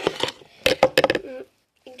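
Hands handling slime over a plastic tub: a quick run of sharp clicks and snaps, about six in two seconds.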